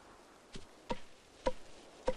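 Wooden clubs beating bundles of sedge shoe-grass against stones to soften the blades: three sharp knocks at irregular intervals, each with a short ring.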